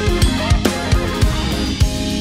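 Acoustic drum kit with Meinl cymbals played over a full-band backing track with guitar. A busy, syncopated groove of kick-drum and snare strokes, about six or seven kicks in two seconds, under the sustained pitched backing.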